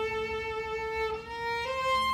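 Solo violin playing classical music: one long bowed note held for just over a second, then two short notes stepping up in pitch.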